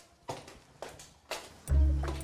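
Three soft steps about half a second apart, then background music comes in with a deep sustained bass note near the end.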